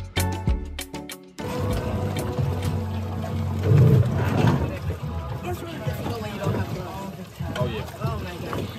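Background music that cuts off abruptly about a second and a half in. It gives way to water splashing and dripping at a boat's stern as a scuba diver climbs the swim ladder out of the sea. A steady low rumble and people's voices run under it.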